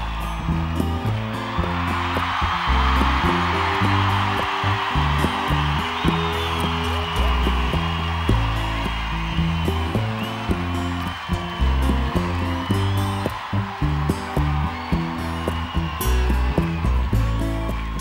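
Live band playing the instrumental intro of a pop song, with acoustic guitar and steady low bass chords, under loud cheering and whistling from a large stadium crowd. The cheering swells about two seconds in and eases off near the end, as the singing is about to start.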